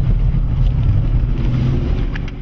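A car being driven, heard from inside the cabin: steady low engine and road noise.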